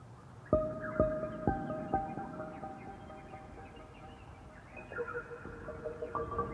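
Calm ambient music: a piece opening with four struck notes about half a second apart that ring on, followed by more gentle notes about five seconds in.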